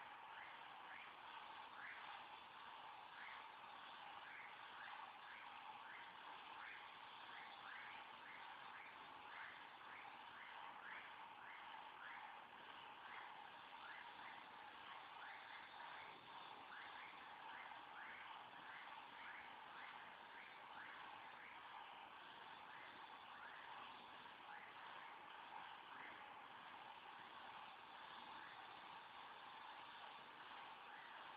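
Near silence: a faint steady hiss with faint short chirps scattered through it, a few a second.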